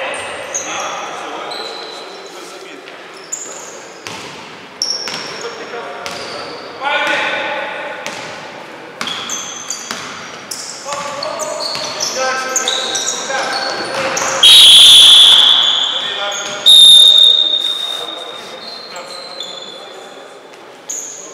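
Basketball game in an echoing gym hall: a ball dribbled on the court and players shouting, then two long, loud blasts of a referee's whistle about three-quarters of the way in.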